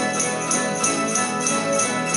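A Spanish plucked-string orchestra of bandurrias, laúdes and guitars playing a jota, with a quick, even rhythmic pulse.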